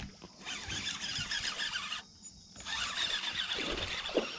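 Baitcasting reel whirring as line pays out on a cast. It goes quiet about two seconds in, then whirs again as the reel is cranked to retrieve the lure.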